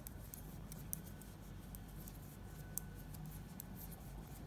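Knitting needles clicking faintly and irregularly as stitches are worked in fabric-strip yarn.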